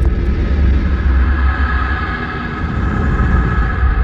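A loud, deep rumble with a steady droning tone held over it, a cartoon sound effect.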